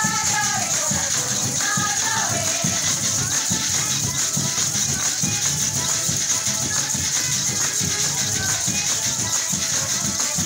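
Live Venezuelan Christmas parranda music: maracas shaking steadily over a driving hand-drum beat, with strummed cuatros and a violin. A melodic line slides downward twice in the first three seconds.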